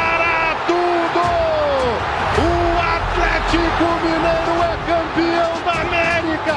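Excited football commentator's voice shouting the title call in long, drawn-out notes over background music.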